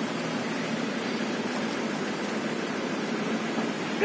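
Steady background noise, an even hiss with no distinct events and no speech.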